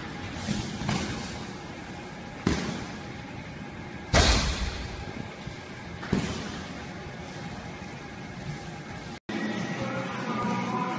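Blows landing in MMA sparring: a handful of sharp slaps and thuds of gloved punches and kicks, the loudest about four seconds in, over gym background noise.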